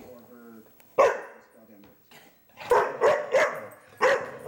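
Chocolate Labrador barking at a can of compressed air: one sharp bark about a second in, then three quick barks in a row near the end.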